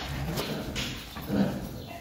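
Horses in a stable stall: two short breathy noises, then a louder, lower sound about a second and a half in.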